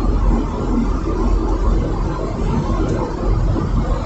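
Steady low rumble of road and engine noise inside the cabin of a moving vehicle.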